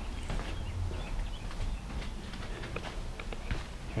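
Footsteps on a concrete floor: a run of light, irregular steps.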